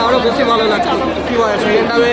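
Speech only: people talking close to the microphone, with crowd chatter behind.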